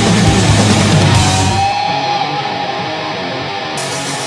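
Death thrash metal track with distorted electric guitars, bass and drums. A little under halfway the drums and bass drop out, and a lone guitar rings on with a held note.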